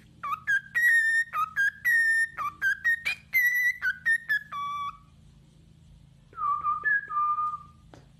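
Cockatiel whistling: a quick run of clear, pitch-jumping whistled notes, then a pause and a shorter phrase of a few notes near the end.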